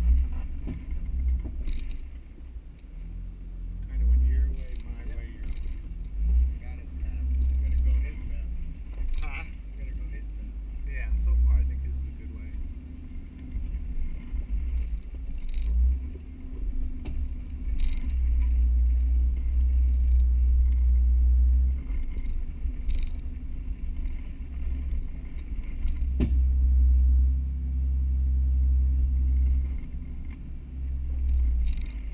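Mercedes-Benz G320 crawling over rocks off-road: a low engine rumble that swells and eases with the throttle, with scattered knocks and clunks from the rocks and suspension, a sharp one about a third of the way in and another near the end.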